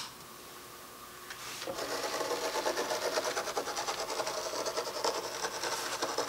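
A Mesmergraph sand drawing machine starting up: a click at the start, then about a second and a half later its gear drive begins running steadily, with the rasp of a chrome steel ball being dragged through sand.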